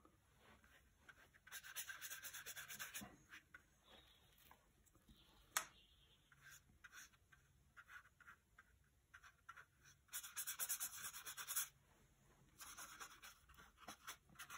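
Paintbrush stroking and scrubbing on watercolour paper: short bursts of scratchy rasping strokes, each lasting a second or two, about two seconds in and again twice near the end, with a single sharp tick in between.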